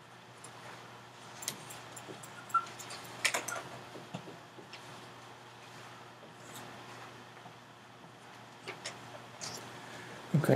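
Dry-erase marker tapping and scratching on a whiteboard as music notes are written onto a staff: a scattering of short, light clicks, clustered about three seconds in and again near the end.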